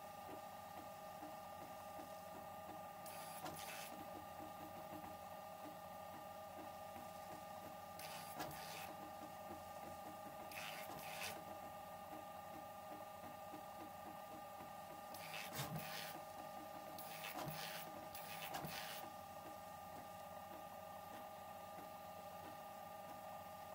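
Pellet-extruder 3D printer built on modified Prusa MK4 mechanics printing the first layer, its stepper motors whining steadily with several brief louder rasps as the head moves.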